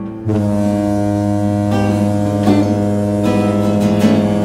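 Acoustic guitar: a chord strummed about a quarter second in and left ringing, with a low bass note held under it, and a few lighter strums over it later on.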